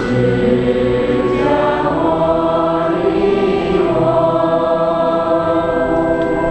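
A choir of many voices singing a slow Buddhist devotional hymn, with long held notes moving gently from one pitch to the next.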